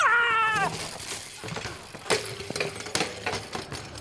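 A person's short high yell, falling in pitch and then held briefly, followed by scattered clicks and knocks.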